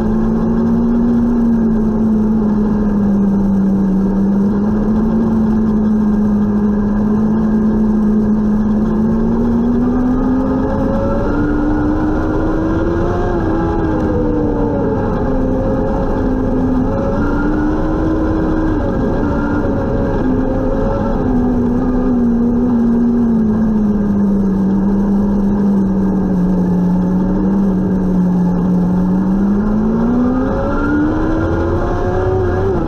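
Restrictor-class micro sprint car's engine heard from inside the cockpit while racing on a dirt oval, with tyre and chassis rumble underneath. The engine pitch sags and climbs as speed changes through the laps, then rises sharply near the end as the car accelerates hard.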